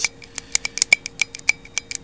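Quick, irregular light metallic clicks, about five or six a second, from the lever and hinge of a Remington 597 trigger group being worked back and forth by thumb. The freshly oiled hinge is being worn in to loosen it, the fix for a trigger that doesn't catch when pulled.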